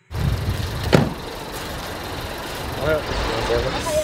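Outdoor vehicle rumble by parked cars, with a single sharp knock about a second in. Brief voices come near the end.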